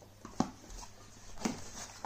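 Cardboard camera box being opened by hand: flaps and lid handled, with a sharp tap about half a second in and another about a second and a half in.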